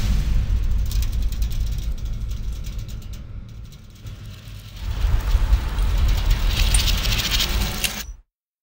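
Suspense sound design from a film soundtrack: a loud, deep rumbling drone with fast mechanical ticking over it, dipping in the middle and swelling again about five seconds in, then cutting off abruptly.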